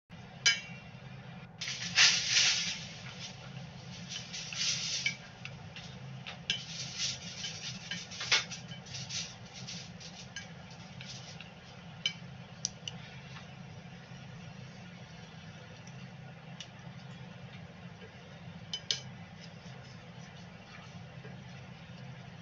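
Steak frying in butter in a stainless steel pan, with a steady sizzle under a low hum. Wooden chopsticks clink and scrape against the pan as the meat is moved, busiest in the first ten seconds and then only a few scattered clinks.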